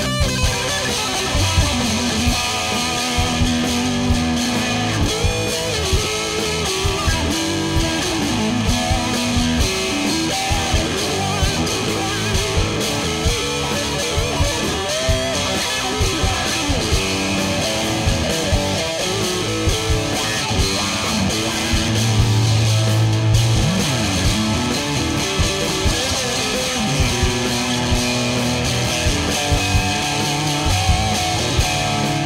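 Squier Bullet Stratocaster electric guitar fitted with Fender Noiseless single-coil pickups, played through an amplifier: a self-written song of riffs and lead lines, with some bent notes.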